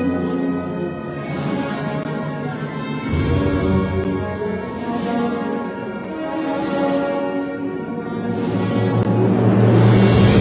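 Procession band of brass and drums playing a slow funeral march: held brass chords over low bass notes, with a drum stroke every couple of seconds, swelling louder near the end.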